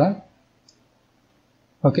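A single faint click of a computer mouse, between short bits of the narrator's speech.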